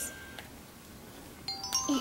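Mostly quiet for the first second and a half, then a few bright chime notes come in one after another, a doorbell-style ding.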